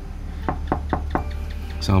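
Knuckles rapping four times in quick succession on a wooden door.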